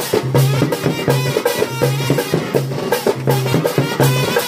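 Music with a fast, steady drum beat and a low note repeating under it, accompanying the dance.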